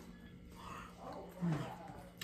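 Quiet sounds of a person eating at a table, with a brief low vocal sound that falls in pitch about a second and a half in.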